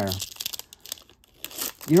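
Foil wrapper of a trading-card pack crinkling and tearing as it is pulled open by hand, in a few short rustles with a brief pause in the middle.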